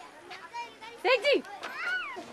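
Short bursts of voice, speech-like, with a gliding vocal sound near the end; no other distinct sound.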